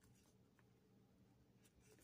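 Near silence with faint rustling of thin Bible pages being leafed through by hand.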